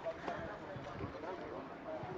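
Polo ponies' hooves clopping irregularly on grass turf as the horses jostle in a tight group. Faint voices call in the background.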